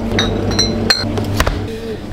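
Glass soda bottles clinking and knocking as one is taken out of a drinks fridge. There are about four sharp clinks in the first second and a half, a couple of them ringing briefly.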